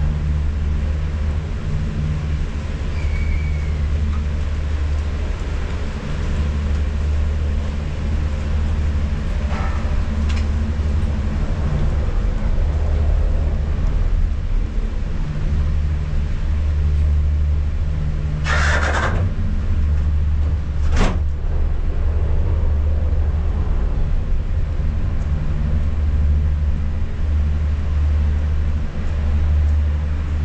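Steady low mechanical hum and rumble of a detachable gondola's terminal machinery, heard from inside the cabin as it is carried slowly through the station. A brief hiss comes about two-thirds of the way through, followed by a single sharp click a couple of seconds later.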